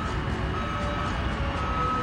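Construction-site machinery running with a low, steady rumble, while a reversing alarm sounds a single high beep about once a second.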